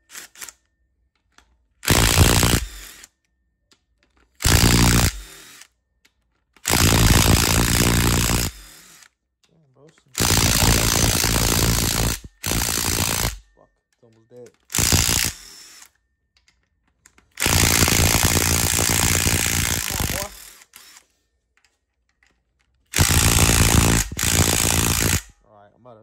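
Cordless impact wrench running in short bursts, about eight runs of one to three seconds each with pauses between, as it breaks loose the rocker arm bolts one by one on a GM 5.3 LS V8's cylinder head.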